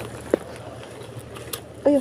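Steady low background hum with one short sharp sound about a third of a second in, then a woman briefly saying "oh, yeah" near the end.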